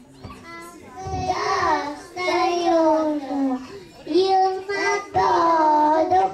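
A young child singing a song into a handheld microphone, with notes held for up to about a second between short breaks.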